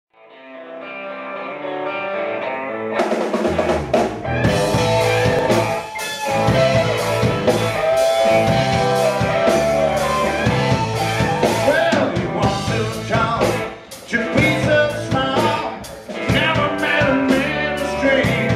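Live Southern rock band playing electric guitars, bass and drum kit. A held guitar chord fades in, then the drums and full band come in about three seconds in.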